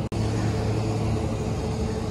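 Steady low hum and rumble of running machinery, broken by a brief gap just after the start.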